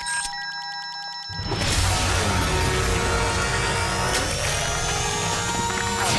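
Cartoon transformation sound effects. About a second of electronic beeps and steady tones from the alien watch gadget is followed by a loud swell of music and effects, with tones rising in pitch.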